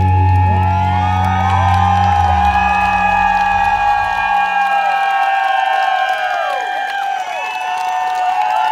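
A rock band's last chord rings out, bass guitar and band together, and fades away about halfway through. The audience cheers and whoops over it and keeps on after it dies.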